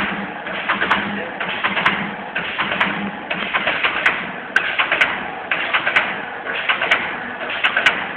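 Automatic cookie depositing machine running, a rhythmic clatter of clicks and rustle that repeats about once a second with each depositing cycle.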